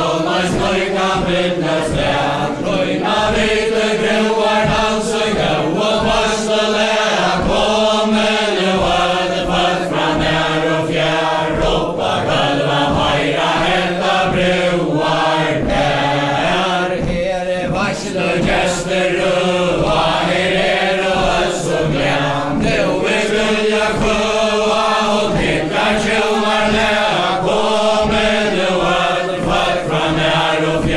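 A mixed group of men and women singing a Faroese chain-dance ballad in unison, unaccompanied, with the regular thud of the dancers' steps on a wooden floor beneath the singing.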